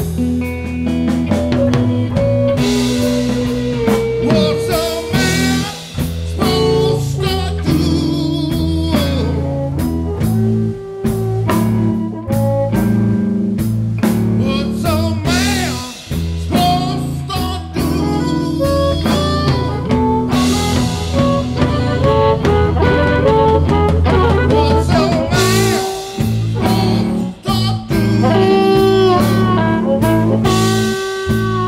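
Live blues band playing an instrumental stretch: electric bass and drum kit keeping a steady groove under a lead line that bends and wavers in pitch.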